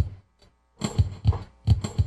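Opening drum hits of a song: a single thump at the very start, then, about a second in, a run of heavy kick-drum and cymbal strikes leading into the band.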